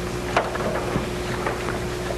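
Steady hiss and low electrical hum of a meeting room's microphone and sound system, with a faint steady tone and a few light clicks.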